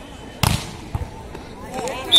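A volleyball struck hard by a player's hand: one sharp slap about half a second in, then a softer thud of the ball about a second in. Onlookers talk and call out around it.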